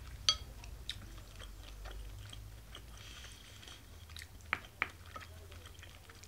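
A person chewing a mouthful of pork and cabbage curry rice, with a few sharp mouth or utensil clicks, two of them close together late on.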